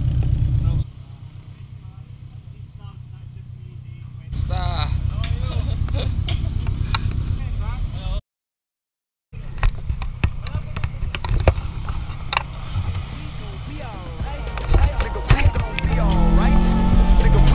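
A car engine idling as a steady low rumble, with men talking over it, broken by a brief cut to silence. Music comes in near the end.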